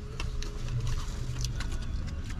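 Eating sounds in a car: a run of small, irregular clicks and crinkles from a foil sandwich wrapper being handled, along with chewing.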